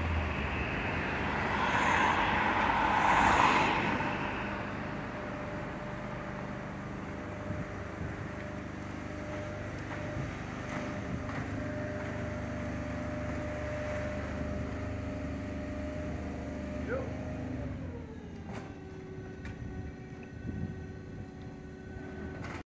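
Truck-mounted ladder lift lowering a piano: its motor runs with a steady whine as the platform descends, and the pitch drops and settles lower about three-quarters of the way through. A passing vehicle is loud for the first few seconds.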